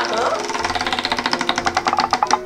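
Spinning prize wheel, its rim pegs clicking rapidly against the pointer in a fast, even run of ticks.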